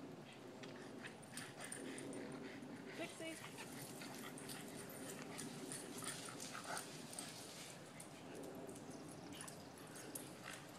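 Faint sounds of Boston terriers moving about, with scattered light clicks and a couple of brief high whimpers, one about three seconds in and one near seven seconds.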